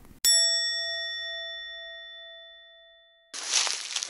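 A single bell-like chime, a ding, is struck once and rings out, fading away over about three seconds. Near the end a rustling, crackling noise starts.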